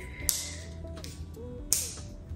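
Two sharp clicks about a second and a half apart, from fingers handling a small plastic contact lens blister pack, over soft background music.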